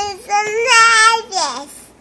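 A toddler girl's high-pitched voice sing-songing, ending with a long downward slide in pitch about a second and a half in.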